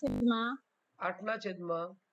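Speech in two short phrases, with a brief loud burst of noise at the very start.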